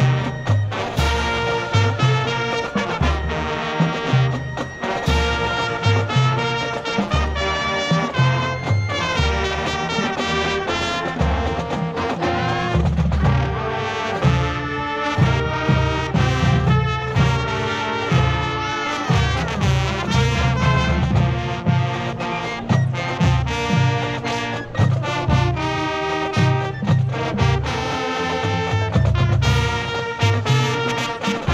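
Marching band playing, brass instruments to the fore over a low bass line.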